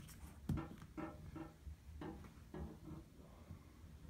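Faint scattered clicks and rubbing of a plastic suction-cup hook being pressed and worked onto a bathroom wall, with a sharp click about half a second in.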